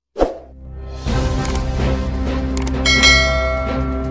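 News intro music with sound effects: a single hit just after a brief gap, then a sustained music bed from about a second in, with a bright ringing, chime-like hit about three seconds in.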